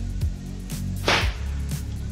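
Background music with a steady electronic beat, a low drum hit about twice a second, and one loud, sharp crack about a second in.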